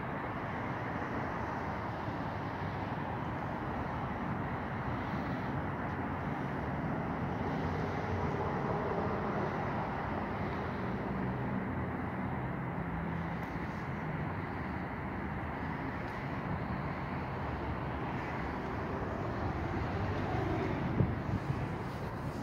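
Steady hum of outdoor road traffic, with a brief sharp knock near the end.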